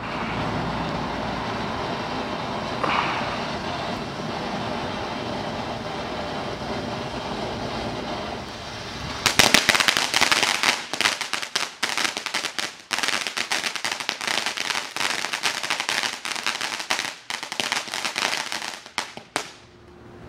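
Ground fountain firework spraying sparks with a steady hiss, then about nine seconds in switching to dense, rapid crackling that thins out and stops near the end as it burns out.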